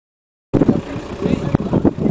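Silence for about half a second, then loud outdoor roadside noise: a heavy low rumble with voices mixed in.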